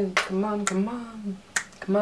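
A young man's voice in short, held, sung-like notes, with sharp clicks falling between them.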